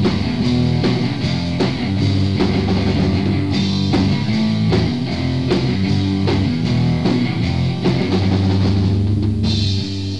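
Punk band rehearsing a fast song on electric guitar, bass and drum kit, with steady drum hits under sustained chords. Cymbals come in a few seconds in, and a final cymbal crash near the end marks the song ending.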